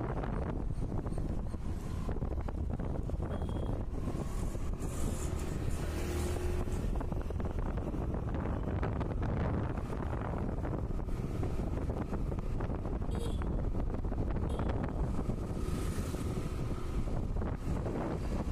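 Wind buffeting the microphone on a moving motorbike, over the steady running of the bike and road traffic.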